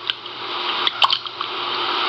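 Plastic neti pot handled and turned around close to the microphone: a rustling hiss with two light knocks, about a second apart.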